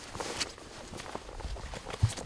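Footsteps of a person walking through forest undergrowth, a few uneven steps with rustling of plants.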